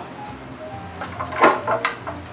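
Sharp clicks and knocks from a stand mixer being handled as it is stopped and its head worked, the loudest about a second and a half in, over a low steady hum.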